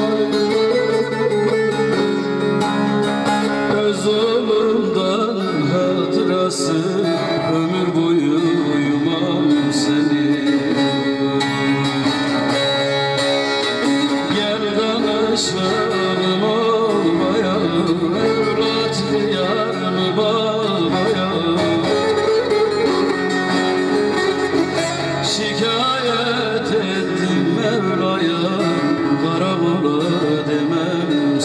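A man singing a Turkish folk song while playing a bağlama, the long-necked plucked Turkish lute, amplified through a microphone.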